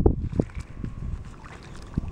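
Wind buffeting the microphone in gusts, a low rumble, with a few soft knocks in the first half second as someone wades into shallow water.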